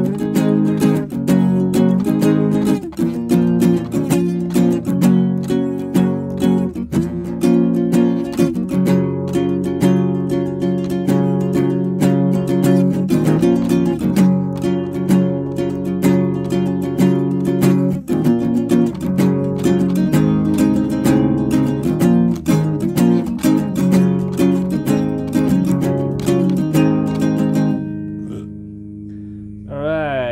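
Acoustic guitar playing a fingerpicked passage of quick notes over ringing chords, fading out about two seconds before the end.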